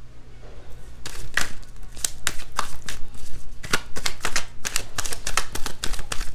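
Tarot deck being shuffled by hand: a rapid, irregular run of sharp card clicks and slaps starting about a second in.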